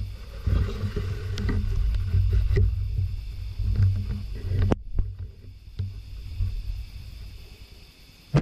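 Loud, uneven low rumble on the camera's microphone, fading near the end, with two sharp clicks about midway.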